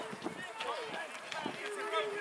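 Several voices shouting over one another, indistinct, from rugby players in a maul and onlookers at the touchline, with a few short knocks among them.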